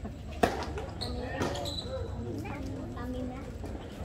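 A tennis serve: a sharp racket-on-ball hit about half a second in, then a second, softer ball impact about a second later. People are talking in the background.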